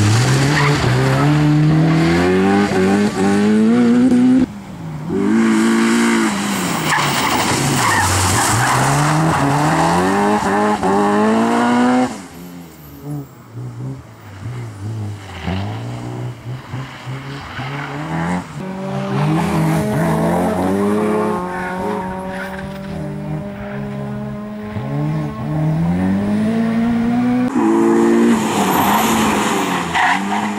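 Honda Civic Type R's four-cylinder engine revving hard, its pitch climbing again and again and dropping away on lifts and gear changes, with tyres squealing and skidding through tight turns. It goes quieter for several seconds from about twelve seconds in, then builds again.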